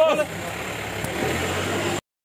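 A vehicle's engine running, heard from inside the cabin as a steady low hum, with a brief voice at the very start and faint voices about a second in.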